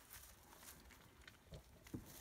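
Near silence, with a few faint rustles and soft clicks from a ewe and her newborn lambs stirring in straw bedding; a brief, slightly sharper tap comes just before the end.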